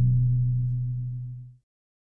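Tail of a logo jingle: a held low tone left over from the closing music sting, fading away and ending about one and a half seconds in.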